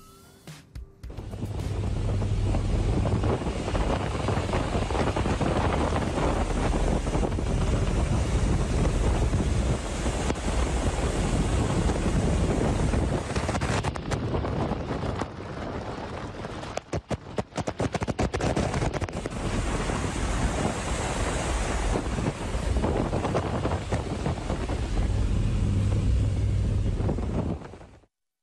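Loud rushing wind and aircraft noise inside a passenger plane's cabin in flight with its rear door open, buffeting a phone's microphone. About halfway through, the sound breaks up into crackling dropouts for a few seconds.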